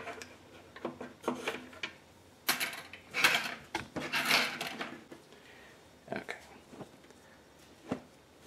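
A damp cotton T-shirt being pulled, straightened and smoothed on a tabletop by hand: a series of short rustles and light bumps with brief pauses between them.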